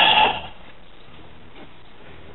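A man's voice trails off in the first half-second, then a low steady hiss with a faint knock or two.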